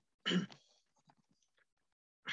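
A person clearing their throat once, a short rough burst about a quarter of a second in.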